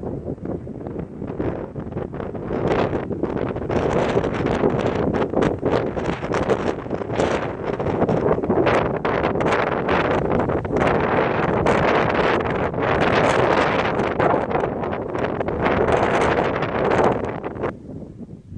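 Wind buffeting the microphone in gusts: a rough, uneven noise that grows louder about two seconds in and drops back near the end.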